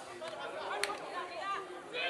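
Background chatter of people talking, fainter than the nearby commentary, with one sharp click just before a second in.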